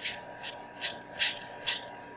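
Five short high electronic beeps, each starting with a click, at about two a second, as the electron microscope's magnification is stepped down. A faint steady tone runs underneath.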